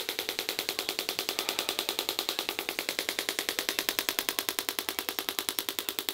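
Radial shockwave therapy applicator firing a rapid, steady train of sharp clicking pulses, about ten a second, against the thigh during treatment.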